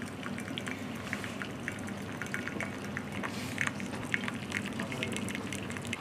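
Hot water running from the tap of a tea urn into a copper jug: a steady pouring stream with many small splashing ticks.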